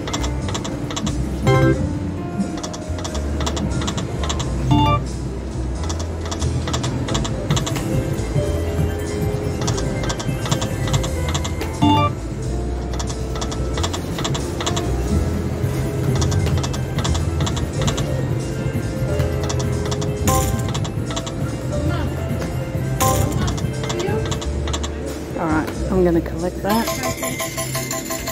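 Poker machine (Konami Aztec Empire pokie) game sounds: electronic music and reel-spin effects with short chimes now and then, over a steady low hum of the room. A different tune starts near the end.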